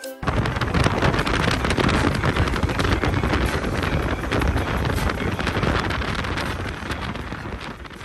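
Wind buffeting the microphone on a motorboat under way, a loud, rough, continuous rush that starts abruptly just after the start and fades near the end.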